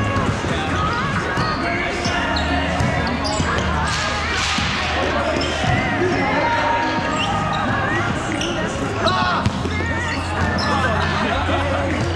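Volleyball being hit and bouncing during a rally in a large reverberant hall, with two sharp ball contacts close together about nine seconds in. Players' voices call out over background music with a steady bass line.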